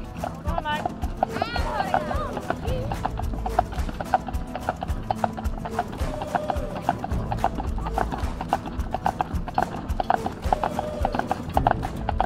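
Horse's shod hooves clip-clopping at an even pace on a paved road as it pulls a cart, over a low steady rumble.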